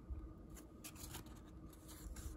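Faint rustles and a few light ticks of a cardboard trading card being handled and turned over in the fingers, over a low room hum.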